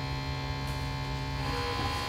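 A steady electrical hum made of many held tones together, which shifts slightly about one and a half seconds in.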